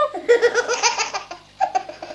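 A baby laughing hard: a rapid run of belly-laugh pulses, a brief catch of breath, then another short laugh near the end.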